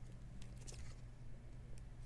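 Faint rustles and light scrapes of a trading card being slid into a clear plastic sleeve and rigid plastic toploader, a few small crinkles about half a second in, over a steady low hum.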